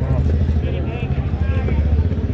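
A vehicle engine running close by, a steady low rumble, under faint street chatter.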